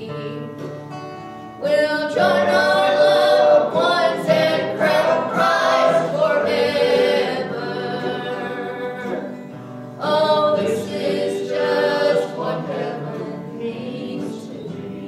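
A woman and a man singing a slow gospel song together to acoustic guitar accompaniment. There are two sung phrases, the second starting about ten seconds in, with the strings carrying on between them.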